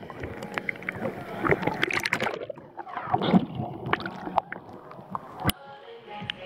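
Pool water sloshing and splashing around a GoPro at the surface, with many short clicks and gurgles as water laps over the camera housing. Voices in the background.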